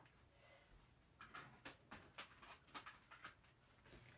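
Near silence, then from about a second in a run of faint, scattered clicks and rustles of clear plastic embossing folders being handled and stacked.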